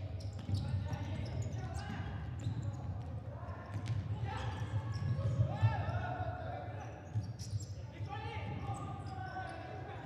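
Live sound of an indoor futsal game in a large hall: players shouting and calling to each other, with the ball being kicked and knocking on the court, echoing in the arena.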